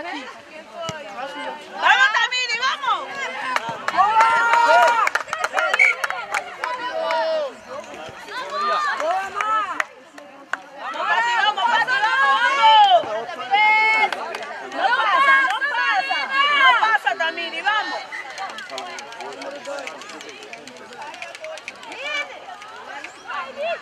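High-pitched women's voices shouting and calling out in several loud stretches, over a background of outdoor chatter, quieter in the last few seconds.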